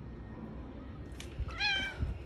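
A black house cat gives one short meow near the end as it wakes from sleep.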